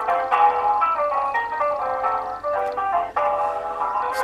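Telephone hold music: a thin, tinny melody of short stepped notes heard through a phone's speaker, cut off above the treble like a phone line.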